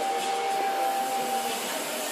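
Steady hiss of background noise, with a single steady tone held through the first second and a half.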